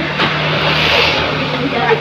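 A passing motor vehicle's engine, its noise swelling to a peak about a second in and easing off, over a steady low hum.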